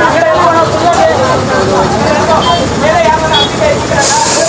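Several people talking over one another, with a vehicle engine running steadily underneath.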